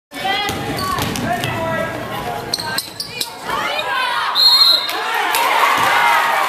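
Basketball game in a gym: a ball bouncing on the hardwood and shouting voices from players and crowd, with a short referee's whistle blast about four and a half seconds in.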